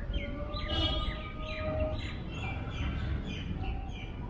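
Small birds chirping in the park trees, a rapid run of short, quick falling notes, several a second, over a low background rumble.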